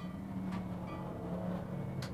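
Electric hair clipper running with a steady low buzz as it cuts short hair, with a light click about half a second in.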